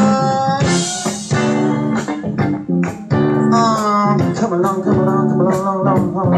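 A live band playing amplified music: electric guitar, bass guitar and drum kit, with steady, regular drum hits under held guitar notes.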